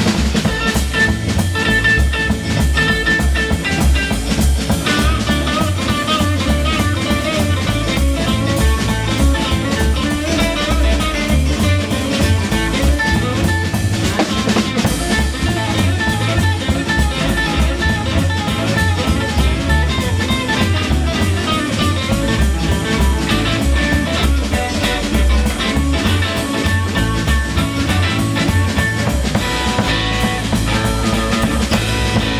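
Live blues band playing an instrumental passage: two electric guitars over bass and a drum kit, with a steady beat.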